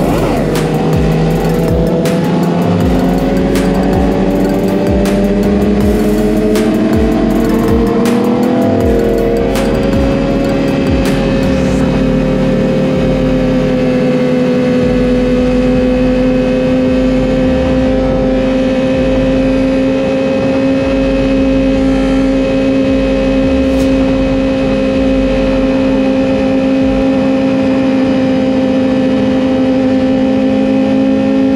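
Yamaha R6 sport bike's inline-four engine running at high, steady revs, climbing slightly over the first ten seconds and then held even, with wind noise. A trap beat's deep bass drum thumps underneath.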